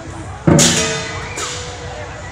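Lion dance percussion: a loud metallic crash of cymbals and gong about half a second in, ringing as it fades, then a second, lighter crash a little before a second and a half.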